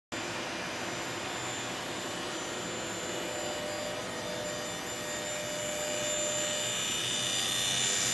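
Steady static hiss with faint steady tones from a small loudspeaker fed by an FM receiver, growing a little louder near the end.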